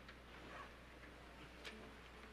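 Near silence: room tone with a steady low hum and a few faint clicks, the sharpest about one and a half seconds in. Faint held notes come in near the end as music begins.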